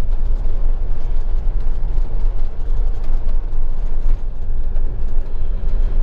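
Motorhome driving along a road, heard from inside the cab: a steady low rumble of engine and tyres with no break.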